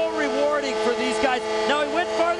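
A hockey arena's goal horn holding one steady, pitched tone, the signal of a home goal just scored. A voice talks over it.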